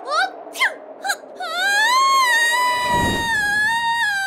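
A cartoon female voice holding one long, high-pitched scream from about a second and a half in, rising at first and then held steady. About three seconds in, a brief rushing noise sounds beneath it.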